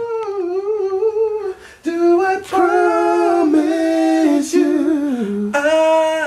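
A man singing a slow love-song melody, unaccompanied, in long held notes, with a short break about two seconds in.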